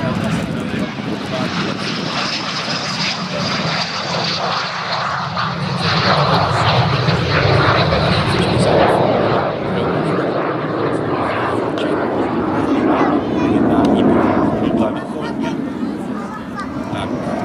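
Aero L-39C Albatros jet trainer's Ivchenko AI-25TL turbofan in flight: continuous jet noise with a high whine that falls slowly in pitch over the first few seconds. It swells louder in the middle and again near the end.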